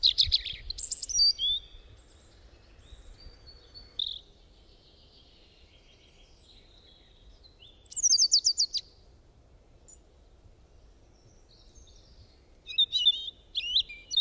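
Birds chirping and calling in short high bursts, with a quick run of falling notes about eight seconds in and a cluster of chirps near the end, over faint outdoor background noise.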